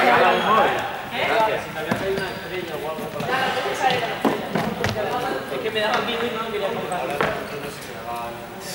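Chatter of a group of young people talking over one another in a sports hall, with a few sharp knocks scattered through.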